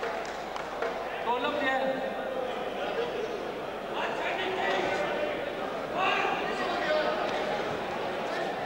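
Men's voices talking and calling out, echoing in a large indoor sports hall.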